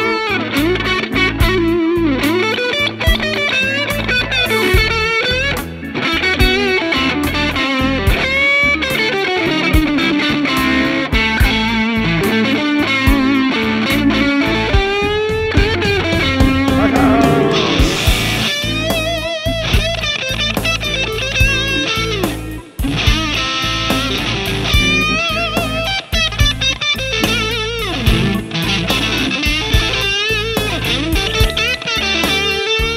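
A Fender Custom Shop 1964 Stratocaster Relic electric guitar playing a lead line full of string bends and vibrato over a backing track with a steady beat.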